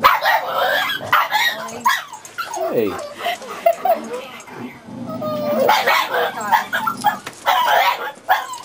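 Dog barking and yipping in short, repeated calls.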